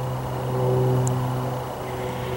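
A steady low mechanical hum with faint higher overtones, swelling slightly about half a second in.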